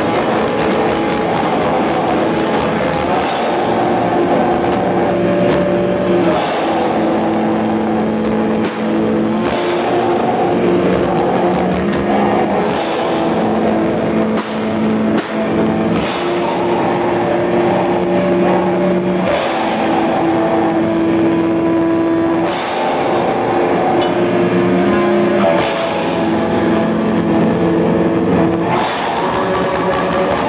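Live black metal band playing loud: distorted guitars holding long, sustained notes over drums with frequent cymbal crashes.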